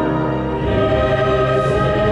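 A national anthem sung by a choir with orchestral accompaniment, held chords changing about half a second in.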